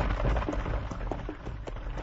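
Radio-drama sound effect of horses travelling on a dirt road: irregular hoof clops over a steady low rumble, as of riders and a buckboard on the move.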